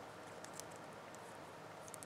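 Faint, light clicks of a small plastic doll being handled and turned in the fingers, over a steady low hiss.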